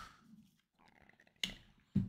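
Trading cards being flipped by hand: two short, sharp card-against-card sounds, one about a second and a half in and one at the end, with little else between.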